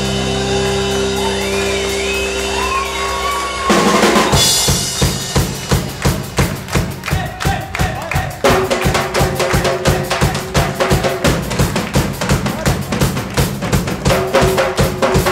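Live rock band: a held, droning chord with high sliding tones, then about four seconds in the drum kit crashes in and plays a fast, steady beat with bass drum and snare. Just past halfway a steady held note joins the drums.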